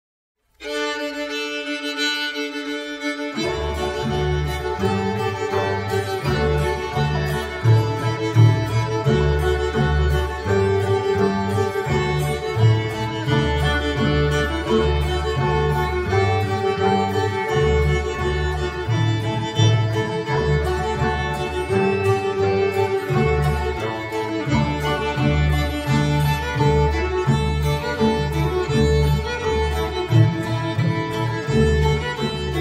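Old-time string band of three fiddles, a banjo and an upright bass playing a tune in A with the fiddles' shuffle bowing: a short-long, down-shuffle up-shuffle rhythm that gives the eighth notes a dance drive. The fiddles start alone and a low bass line comes in about three seconds in.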